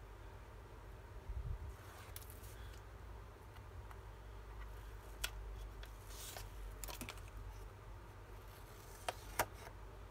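Sheets and strips of paper being handled and slid across a cutting mat: soft rustles and swishes with a few sharp ticks, over a low steady hum.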